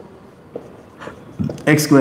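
Marker pen writing on a whiteboard: a few faint short strokes. A man starts speaking near the end.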